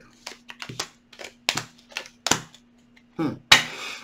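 Tarot cards being handled and laid down on a table: a string of sharp card snaps and slaps, the loudest about three and a half seconds in, followed by a brief sliding rustle.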